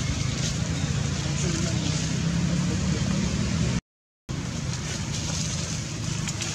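Steady low rumbling background noise, cutting out to silence for about half a second nearly four seconds in.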